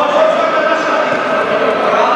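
A futsal ball is kicked and bounces on the sports-hall floor, echoing in the hall, over a steady background of voices from players and spectators.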